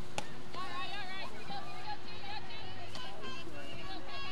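A sharp pop as a softball pitch lands in the catcher's mitt. From about half a second in, several high voices shout and chant over one another: softball players' chatter and cheering.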